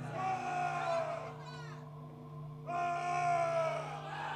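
Two long drawn-out vocal shouts, each sliding slightly down in pitch, with a short flurry of falling high squeals between them, over a steady low electrical hum.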